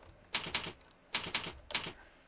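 Typing on a computer keyboard: a short run of keystrokes about a third of a second in, then a second quick run from just past one second until near the end.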